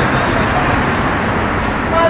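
Steady, loud noise of street traffic going by.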